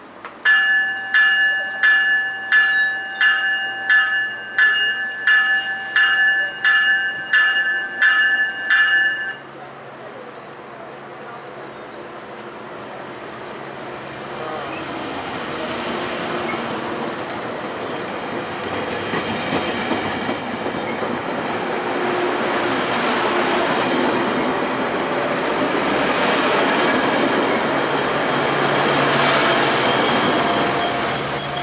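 Metrolink bi-level commuter train arriving at a station. Its bell rings about one and a half strikes a second for the first nine seconds, then stops. The train's rolling rumble then grows steadily louder as the cars pull in, with high-pitched wheel and brake squeal over it.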